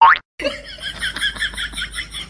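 A cartoon 'boing' sound effect, a quick rising glide at the very start. It is followed by a fast, even run of high chirps, about six or seven a second.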